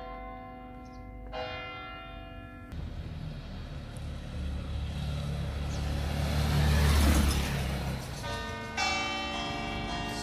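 Church tower bells ringing, struck at the start, again about a second and a half in, and once more near the end. In between, a motor scooter passes close by, its engine growing louder to a peak about seven seconds in and then fading.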